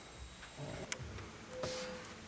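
Quiet handling of a socket tool and dash trim under a truck's dashboard, with one sharp click about a second in.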